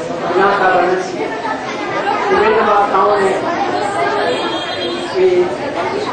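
Crowd chatter: several people talking at once, with no single clear speaker.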